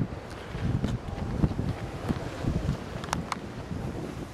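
Wind buffeting a handheld camera's microphone outdoors, an uneven low rumble, with two short clicks a little after three seconds.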